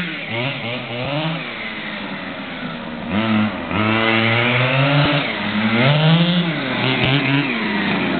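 Small two-stroke petrol engine of an MCD RR Evo 3 1/5-scale RC buggy, revving up and down in pitch as the car is driven. It drops quieter in the first few seconds and comes back louder about three and a half seconds in, with repeated rises and falls.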